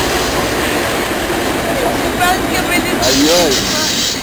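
VIA Rail passenger cars rolling steadily across an overpass, wheels running on the rails, with a voice heard near the end.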